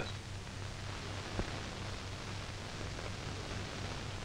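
Steady hiss and low hum of an old film soundtrack with no narration or music, and a single faint click about a second and a half in.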